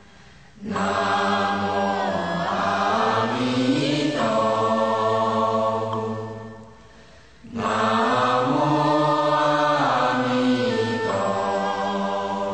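Slow Buddhist chanting by voices in unison, sung in two long, drawn-out phrases with a short pause about seven seconds in.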